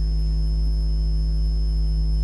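Steady electrical mains hum on the broadcast audio line: an unbroken low hum with a faint high whine above it.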